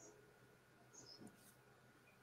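Near silence: faint room tone in a pause of a voice call, with a few faint brief sounds about a second in.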